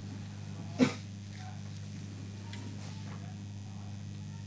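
A steady low hum, with one brief sharp sound just under a second in.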